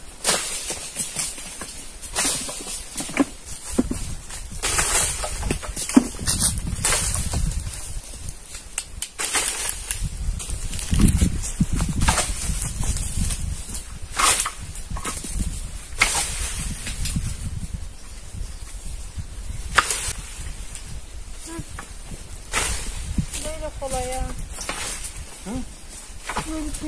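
Walnuts falling from a walnut tree as its branches are shaken, landing with irregular knocks and thuds in the grass and leaves, over a low rumble.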